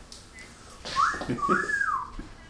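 A person whistles a two-part wolf whistle about halfway in: one note rises and holds, then a second climbs and falls away, lasting about a second.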